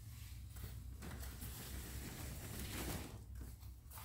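Faint rolling and shuffling of a wire-shelf storage rack on casters being pulled out, loudest from about one to three seconds in, over a low rumble.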